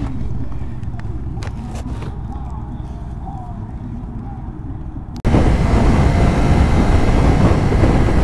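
A low steady rumble with a few faint clicks, then, about five seconds in, a sudden jump to loud wind rush over the microphone and the running engine of a 2024 Kawasaki Ninja 500 parallel-twin sportbike ridden at freeway speed.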